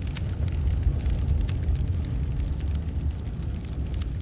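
Sound effect of a burning fire: a steady low rumble with scattered faint crackles.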